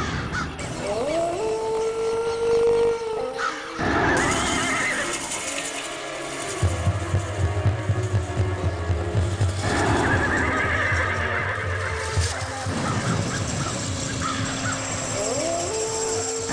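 Dramatic TV-serial background score with animal-call sound effects: a horse whinny about a second in and again near the end, and a low pulsing drone through the middle.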